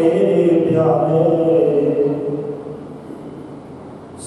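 A man chanting through a microphone in long, drawn-out sung notes. The chant dies away in the second half.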